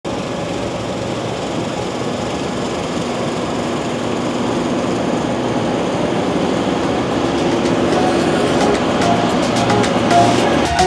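Steady rumble of harvest machinery that grows gradually louder. Background music fades in over the last few seconds.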